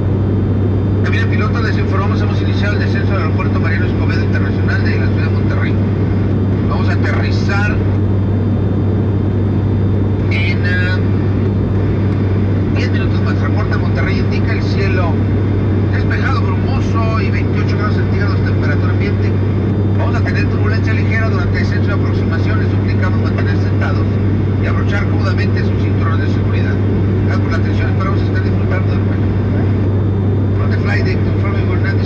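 Steady low drone of an ATR 72-600's turboprop engines and propellers at cruise, heard inside the cabin from a seat right beside the engine. Voices talking come and go over it.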